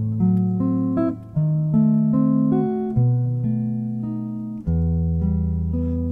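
Archtop jazz guitar playing slow, sustained chords in E minor around F♯7♭5 and B7, the dark minor side of the tune. A new chord is struck about every one and a half seconds and left to ring, with a few moving inner notes.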